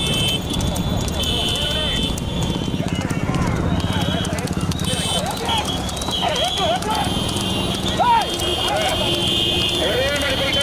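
Racing horse's hooves clip-clopping on the asphalt road as it pulls a light two-wheeled race cart, over steady road and motorbike noise. Voices call out in the middle stretch, and a high-pitched tone sounds on and off several times.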